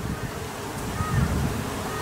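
Wind rumbling unevenly on the microphone over the low hum of a honeybee colony in an observation hive, with a brief faint whine about a second in.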